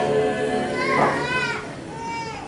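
Choir of graduating students singing the national anthem unaccompanied outdoors, mixed with voices from the crowd; the sound drops lower near the end as a phrase ends.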